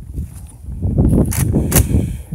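Rough rustling and handling noise on the phone's microphone, with two sharp clicks about a third of a second apart near the end.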